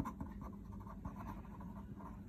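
Felt-tip pen writing on paper: a faint run of short scratchy strokes as a word is written, with a light tap as the tip touches down at the start.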